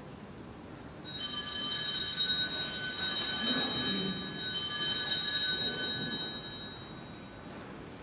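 Altar bells (sanctus bells) rung twice, about three seconds apart, a bright ringing that starts suddenly and fades out; the signal rung at the elevation during the consecration.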